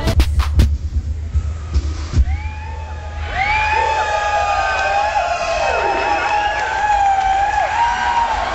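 Electronic club track with a hard, steady beat that stops under a second in. From about two and a half seconds in, a crowd cheers and whoops with long, high shrieks.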